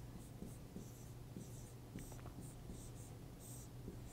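Marker writing on a board: a string of short, faint strokes and light squeaks as several characters are written.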